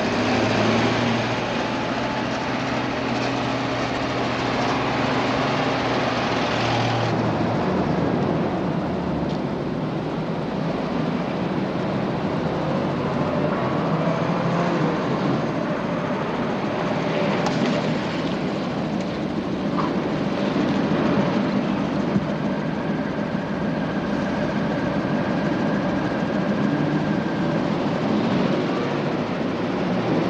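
City street traffic: cars running past in a steady wash of noise. For the first seven seconds a steady low engine hum sits under it, then stops sharply.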